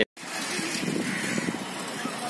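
Street ambience of a busy road: a steady wash of traffic noise that starts suddenly after a split-second of silence.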